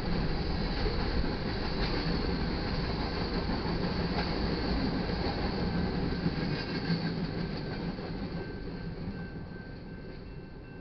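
Freight cars rolling past on the rails: a steady rumble with clicks from the wheels, fading over the last two seconds as the end of the train goes by.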